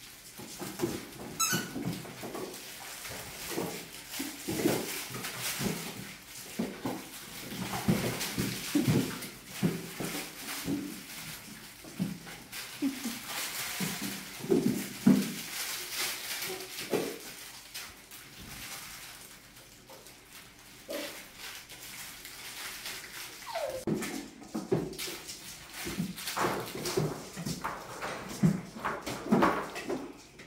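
A litter of young puppies, about five and a half weeks old, whimpering and yipping in many short calls, over the scuffle of paws and toys as they play.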